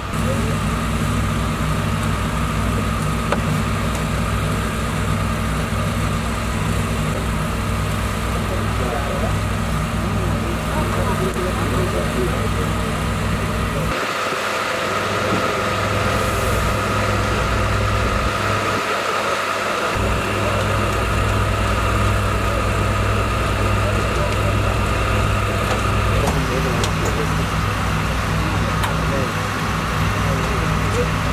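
Steady low drone of engines idling, with voices talking in the background; the drone changes in tone about halfway through and again near the end.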